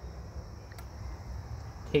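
Quiet outdoor background: a low steady rumble with a faint, steady high-pitched drone, and one faint click a little under a second in.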